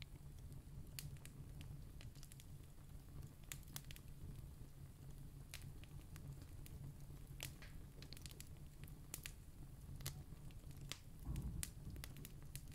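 Quiet room tone: a steady low hum with scattered faint clicks and crackles. A soft low swell comes near the end.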